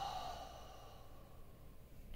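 A person's slow, deliberate exhale through a face mask, a calming deep breath out, fading away over about two seconds.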